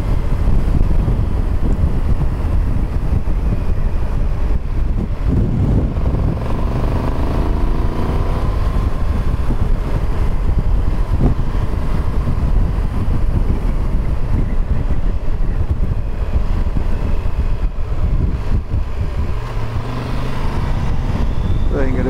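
Motorcycle riding at steady road speed, its engine running under heavy wind rush on the microphone, the engine note rising for a few seconds about a quarter of the way in.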